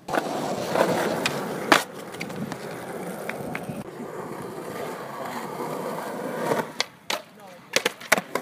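Skateboard wheels rolling steadily over the skatepark pavement, with sharp clacks of boards hitting the ground. The loudest clack is a little under two seconds in. The rolling fades near the end, where a couple more clacks come.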